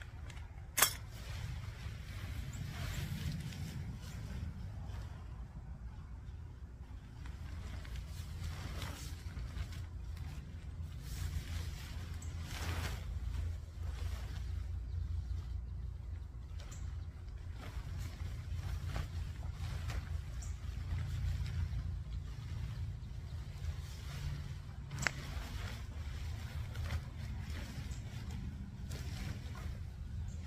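Thin tent fabric rustling now and then as the fly is pulled out of its bundle, spread and lifted by hand, with a sharp click about a second in, over a steady low rumble.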